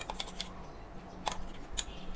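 A few sharp, light clicks of a steel spoon knocking against a stainless-steel mixer-grinder jar as coarsely ground dal is scraped out.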